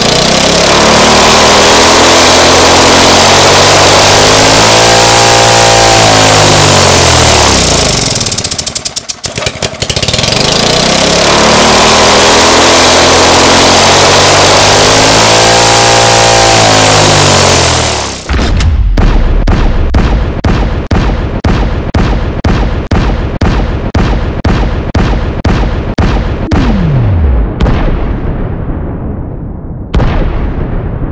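Briggs & Stratton single-cylinder lawn-mower engine running hard on nitromethane, loud, its pitch rising and falling as it revs. About eighteen seconds in, the sound becomes the firing slowed down: a steady beat of separate bangs, about two or three a second, fading.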